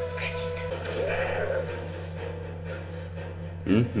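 Anime episode soundtrack playing at a moderate level: background music under brief character dialogue, with a man's short "mm-hmm" near the end.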